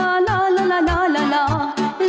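Instrumental intro of a Romanian folk song: an ornamented, bending melody on saxophone and accordion over a steady drum beat with evenly spaced cymbal ticks.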